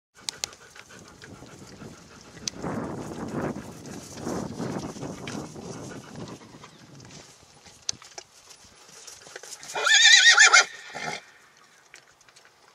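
A horse's hooves on dry grass, soft uneven thuds, then a loud, wavering whinny lasting about a second near the end.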